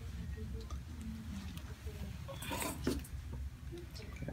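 Low steady room hum with faint soft rustling of hands on the head and hair, and a brief rustle or breath about two and a half seconds in.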